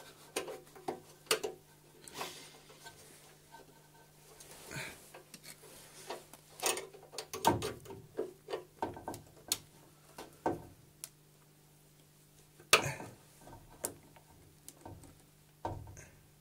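Scattered light metallic clicks and taps from hands working a wire spring clip on a Trabant's cooling-fan housing. The clicks are sparse at first and come thicker in the middle, with a few louder knocks.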